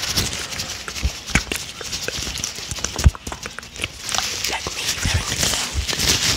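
Disposable gloves handled close to a microphone, stretched, rubbed and crinkled, with irregular small snaps and taps. The loudest is a sharp knock about three seconds in.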